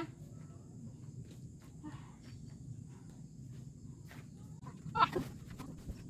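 Faint outdoor background: a low steady hum with scattered small clicks and rustles, and a short spoken "oh" about five seconds in.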